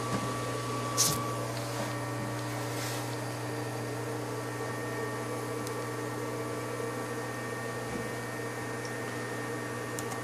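A steady machine hum with a few faint held tones, with brief knocks near the start and about a second in.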